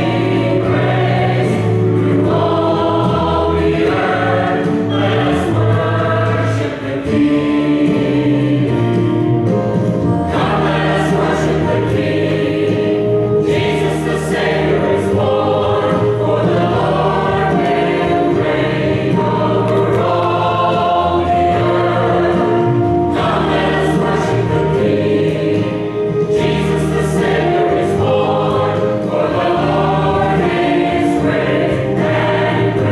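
Mixed church choir of men's and women's voices singing in harmony, with a short break between phrases about seven seconds in.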